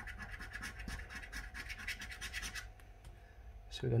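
A coin scratching the latex coating off a paper scratch card in quick back-and-forth strokes. The strokes ease off about two-thirds of the way through.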